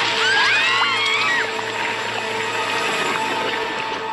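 Background music with steady held tones. Several high rising-and-falling glides sound over it in the first second and a half.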